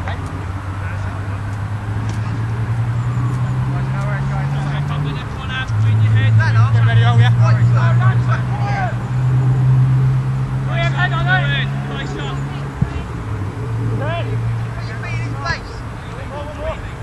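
A steady low engine hum, such as a motor vehicle running nearby, that grows louder and shifts in pitch about five seconds in and eases off in the second half, with distant shouting voices over it.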